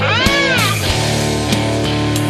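Punk band recording in a no-wave style: a high wailing note swoops up and back down over the first part. Then the band carries on with guitar, bass and drum hits.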